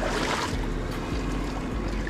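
Steady wind rumble on the microphone with water lapping at the shoreline rocks, and a short rush of noise in the first half second.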